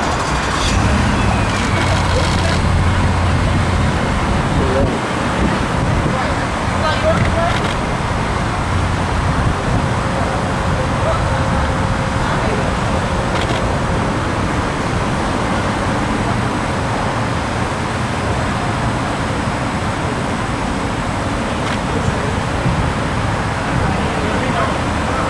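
Steady road traffic noise, with a heavier low rumble in the first two seconds.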